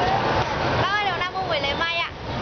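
Busy street background of crowd chatter and motorbike traffic, with a woman's high voice close by from about a second in.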